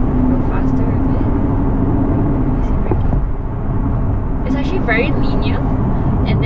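Interior noise of a 2019 Aston Martin DB11 V8 under way: engine and road rumble with a steady low hum, easing briefly about halfway through before picking up again.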